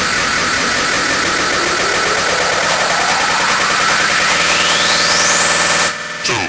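Hardstyle build-up: a dense, loud wash of distorted noise with a sweep rising steadily in pitch over the last four seconds, cutting off abruptly at the end.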